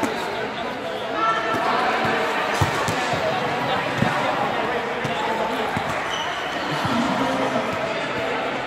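Balls being hit and bouncing on the floor of a large sports hall, a few scattered echoing thumps over the steady chatter of many young people's voices.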